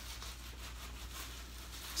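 A bar of Duke Cannon soap rubbed against a Salux nylon wash cloth, a faint rubbing sound.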